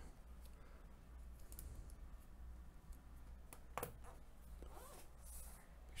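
Faint handling noise of a laptop's aluminium bottom case being picked up and set onto the MacBook Pro chassis, with a few light clicks a little past halfway.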